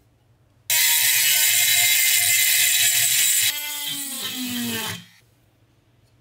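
A small high-speed electric power tool runs loudly for about three seconds. It is then switched off and its motor winds down with a falling whine over about a second and a half.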